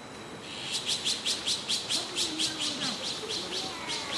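Azure-winged magpie young at the nest giving begging calls: a rapid run of short, high notes, about six a second, starting about half a second in and fading near the end.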